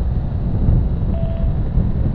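Wind buffeting the microphone over the steady rumble of a BMW R1200 GSA's boxer-twin engine cruising at highway speed. A faint short steady tone sounds a little over a second in.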